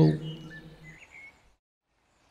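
A man's voice trailing off in a held tone, with a few faint bird chirps, then dead silence from about one and a half seconds in.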